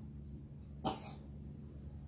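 A single short cough about a second in, over a low steady hum.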